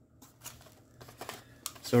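Faint handling noises: a few soft clicks and rustles as a Matco spring crowfoot wrench is lifted out of its foam tray in a cardboard box. A spoken word comes in at the very end.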